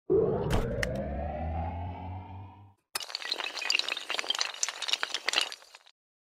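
Intro sound effect: a swelling, rising tone over a low drone for nearly three seconds, then a sudden crash of breaking glass with tinkling shards scattering for about three seconds.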